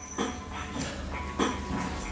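A person doing a burpee on a floor mat: a few dull thuds about half a second apart as hands and feet land and he drops into a push-up plank, over a low steady rumble.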